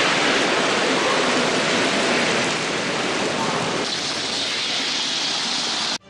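Heavy downpour of rain hissing steadily on a road. The hiss turns brighter about four seconds in and cuts off suddenly at the end.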